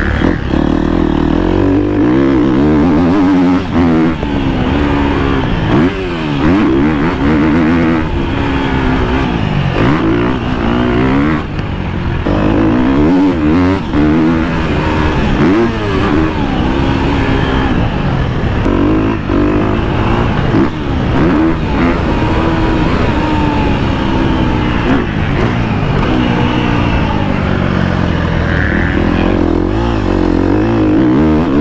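KTM motocross bike engine revving hard and falling back again and again as the rider accelerates, shifts and rolls off the throttle around the dirt track.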